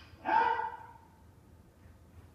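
A single sharp shouted kiai from a jodo practitioner during the kata. It rises in pitch and is held for well under a second.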